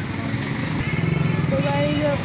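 A motorcycle engine running close by: a low, rapidly pulsing drone that grows louder about a second in.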